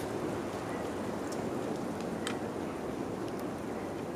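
Steady outdoor background noise with two faint clicks, about one and two seconds in.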